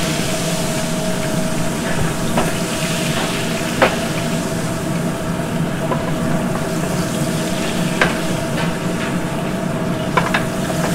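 Short ribs sizzling in rendered fat in a large aluminium stock pot tilted over a gas burner, a steady frying hiss with a low steady hum beneath. A few light metallic clinks, one about four seconds in and another near eight seconds.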